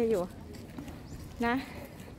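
A woman's voice saying two short words, with faint clicking footsteps on paving between them.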